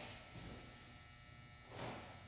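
Quiet room tone with faint steady tones and one soft, brief noise near the end.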